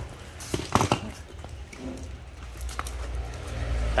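Used power tools being handled on cardboard: a few knocks and clatters about half a second to a second in, then faint handling ticks over a low steady rumble.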